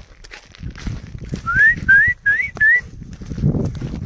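A person whistling four short rising notes in quick succession, about a second and a half in, with a low rustle underneath.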